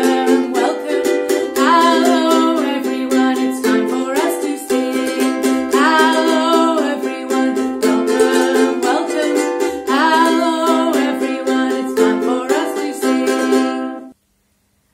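Ukulele strummed in a steady rhythm, playing the chords of a simple song; the playing stops abruptly at the very end.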